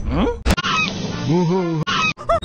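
Rapidly spliced fragments of cartoon soundtrack audio: a rising pitched glide, a sharp click about half a second in, then a wavering pitched cry that cuts off suddenly near the end.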